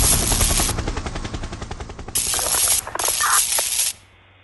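Logo intro sound effect: a rapid rattle like machine-gun fire that fades over the first two seconds, then two loud bursts of hiss, the second cut off abruptly.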